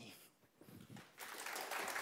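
Audience applauding, starting about a second in after a moment of near silence.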